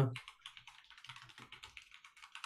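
Fast typing on a computer keyboard: a quick, uneven run of light key clicks, heard over a video call.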